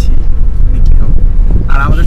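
Steady low rumble of a moving car heard from inside the cabin, with a man's voice coming in near the end.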